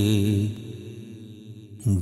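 Male voice singing a slow, chant-like manqabat in Urdu/Punjabi. A held note ends about half a second in, followed by a short breath-like pause, and the next phrase begins near the end with a rising glide.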